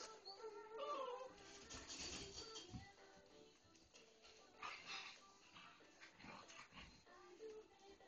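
Faint whines and whimpers of six-week-old puppies, wavering in pitch, over faint background music.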